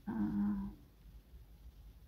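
A person's short, drawn-out hesitation sound, "uh", lasting about half a second, followed by a low steady room hum.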